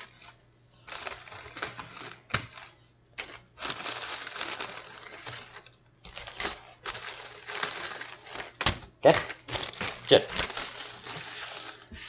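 Ziploc plastic bag crinkling and rustling in irregular bursts as graham crackers are tipped into it, with a few sharp clicks.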